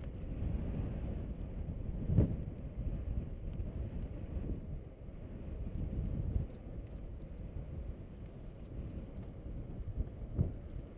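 Wind buffeting the microphone of a camera on a moving bicycle, over low tyre rumble on asphalt. A single thump comes about two seconds in, and the rushing eases off after about six seconds.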